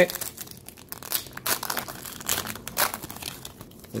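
A Donruss Optic basketball card pack's foil wrapper being torn open and crinkled by hand as the cards are pulled out, in a run of irregular crackles and rips.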